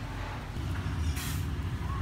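A low rumble that grows slightly louder, with a short hiss a little over a second in.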